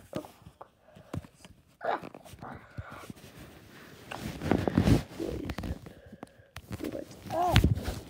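A phone being handled and rubbed against fabric and fingers: irregular knocks and scuffing, loudest about halfway through. There are brief voice sounds about two seconds in and again near the end.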